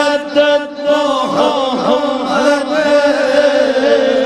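An older man's voice singing a naat, a devotional Urdu poem, in long ornamented melodic lines over a steady held drone. There is a short breath-like dip just before a second in.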